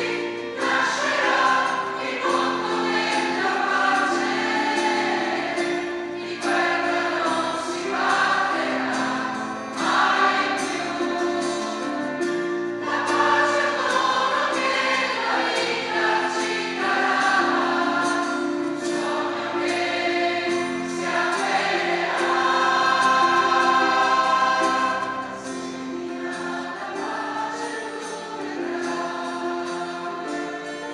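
A mixed church choir singing a hymn in held, sustained phrases, swelling loudest about three-quarters of the way through and easing off near the end.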